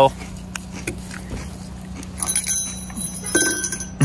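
A small bear bell jingling, a bright metallic ringing of several high tones that starts about two seconds in and lasts about a second.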